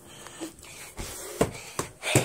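A few short knocks and rustling from a handheld phone being moved about, three sharp knocks in the second half.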